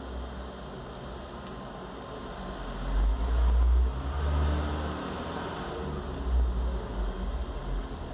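A low rumble over steady background hiss, swelling loudest about three seconds in and again briefly near six seconds.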